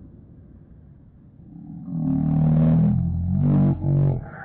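Loud, drawn-out vocal shouts in three stretches, starting about two seconds in, the second rising in pitch, over a low rumble that fades in the first second or so.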